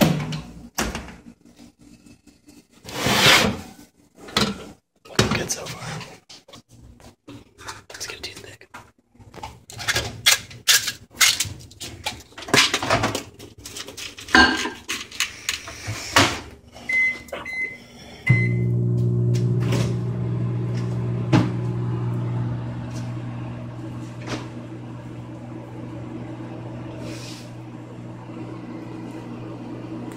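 Knocks and clatter as the oven door is opened and the metal muffin pan handled, then three short electronic keypad beeps about 17 seconds in, followed by a steady electric hum, typical of a microwave oven running.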